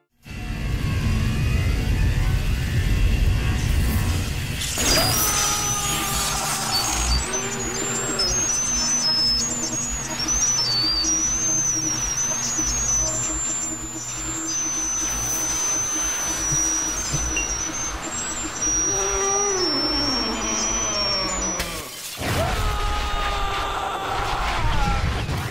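Cartoon action soundtrack: dramatic music over a heavy low rumble, with a thin, wavering high electrical whine through the middle. Near the end a man screams in pain.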